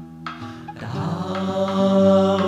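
Layered, overdubbed multi-voice vocal harmony singing a sustained chord. It thins out briefly near the start, the voices come back in about half a second in, and it swells louder toward the end.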